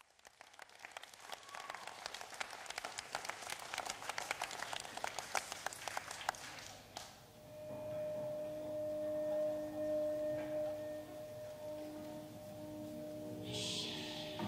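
Audience applause on a live recording, dense at first and dying away after about seven seconds. A steady low drone then begins, the opening of the next piece of gothic/industrial music, with a brief hiss near the end.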